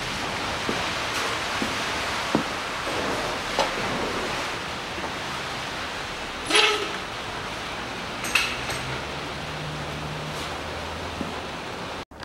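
Steel lifting chain clinking against the engine as the engine crane is let down and unhooked: a few separate metallic clinks over a steady hiss.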